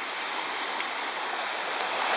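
Steady, even rushing noise with no distinct events and a faint high steady tone above it.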